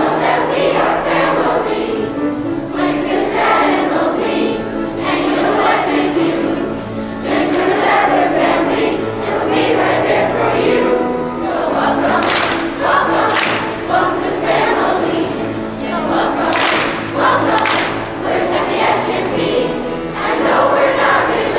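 Children's chorus singing a stage-musical number together, many voices on held, stepping notes.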